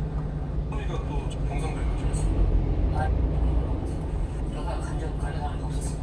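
A small truck's engine idling steadily, heard from inside the cab while the truck sits in stopped traffic, with faint broadcast voices over it.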